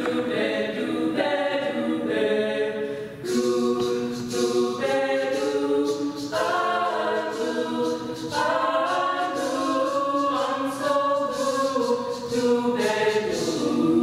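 Women's a cappella group singing in close harmony, unaccompanied, holding sustained chords that change every second or two.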